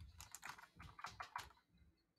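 Faint computer keyboard typing: a quick run of about half a dozen keystrokes that stops about a second and a half in.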